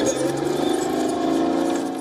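Engine of a tracked armoured vehicle running steadily with an even pitch.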